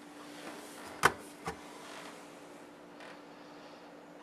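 A beer can being taken off a crowded refrigerator shelf: two sharp knocks about a second in, half a second apart, the first the louder, under a faint steady hum.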